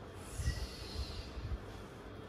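A short, breathy exhale through the nose that sounds like a snort, falling in pitch over about a second. A few soft low bumps sound alongside it.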